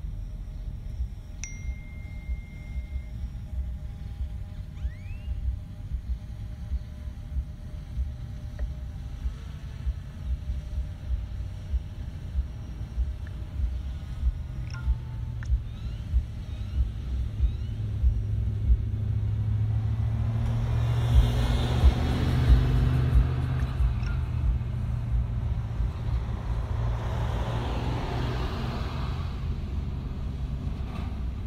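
Outdoor noise: wind rumbling on the microphone, with a louder rushing sound that swells in the last third and eases off near the end.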